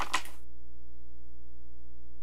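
Steady electrical mains hum with a ladder of evenly spaced overtones. A short noisy sound cuts off abruptly about half a second in.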